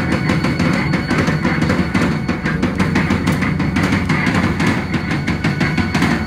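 A live rock band playing loudly, with the drum kit to the fore in quick, steady hits of kick, snare and cymbals over keyboard and guitar.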